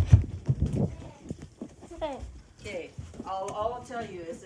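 Knocks and rubbing on a handheld phone's microphone as it is carried and swung about, loudest in the first second. Then a child's voice gives a few short, wordless sounds, more of them near the end.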